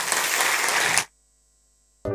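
Audience applauding, cut off suddenly about a second in and followed by near silence.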